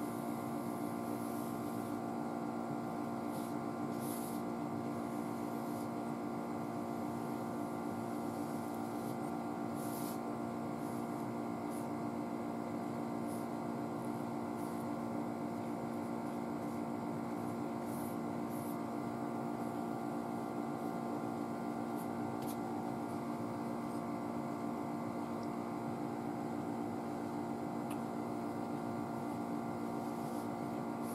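A steady electrical or mechanical room hum made of several fixed tones, unchanging throughout. A few faint, brief high scratchy sounds come now and then, fitting a bristle brush stroking paint on the roadway.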